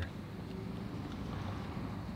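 Steady low rumble of wind on the microphone and road traffic.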